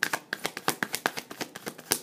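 A deck of tarot cards being shuffled overhand by hand: a quick, irregular run of sharp card clicks and flaps, about eight to ten a second.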